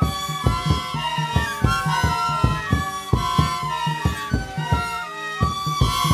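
Tshikona ensemble playing: many end-blown reed pipes sound short interlocking notes over a steady drum beat of about three strokes a second.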